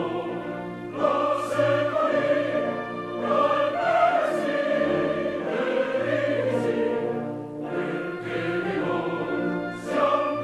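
Background music: a choir singing a classical, operatic-style piece with orchestral accompaniment, long held chords swelling and shifting in pitch.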